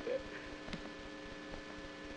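Steady electrical hum of several fixed tones in the sound system during a pause in the talk, with one faint click about 0.7 seconds in.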